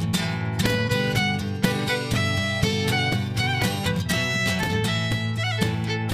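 Acoustic trio playing: a bowed violin melody over strummed acoustic guitar and cajón, with vibrato on a held violin note near the end.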